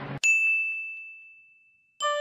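A single bright, bell-like ding struck once, its one high ringing tone fading away over about a second and a half.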